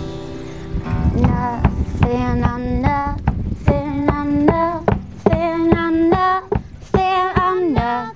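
Live band playing a song: drum kit and guitar with a high melody line that slides between notes, likely sung by a woman. A held chord sounds for about the first second before the drums and melody come in.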